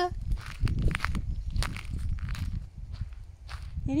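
Footsteps crunching on gravel and grass at an irregular walking pace, over a low rumble.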